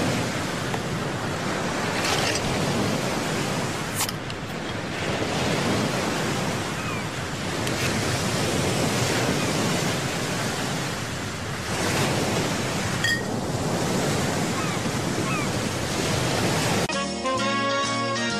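Ocean surf washing onto a beach, rising and falling in slow swells. Music comes in about a second before the end.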